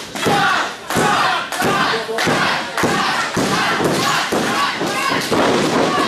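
Repeated heavy thuds of wrestlers striking each other and hitting the ring mat, roughly one a second, over voices in the hall.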